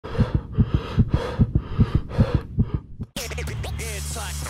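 Rapid double thumps like a heartbeat, about two and a half pairs a second, each with a burst of static hiss. About three seconds in they cut off suddenly and music with a steady bass line starts.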